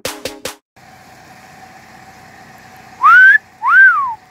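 A person's wolf whistle about three seconds in: two loud whistled notes, the first sliding up and the second sliding up and then falling away.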